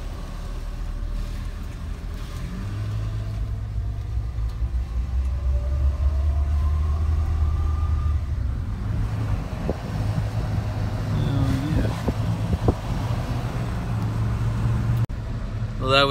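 Pickup truck driving, heard from inside the cab: a steady low engine and road rumble, with a fainter whine rising in pitch for a few seconds in the middle as the truck picks up speed.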